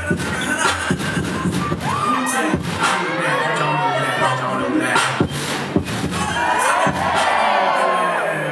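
Hip-hop dance music with beats and vocal sounds playing over a PA, with an audience cheering and screaming over it, swelling into a burst of many screaming voices near the end.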